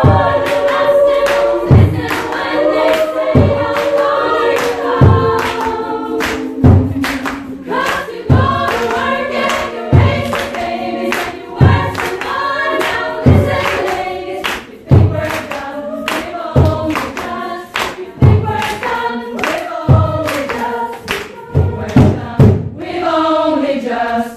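A women's choir singing in harmony over a steady drum beat, with a deep drum stroke about every second and a half and lighter sharp hits between. Near the end the drums stop and the voices carry on alone.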